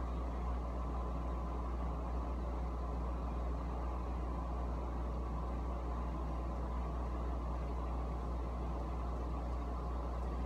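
Steady low mechanical hum with an even rush above it, unchanging throughout, typical of a household appliance running in the room.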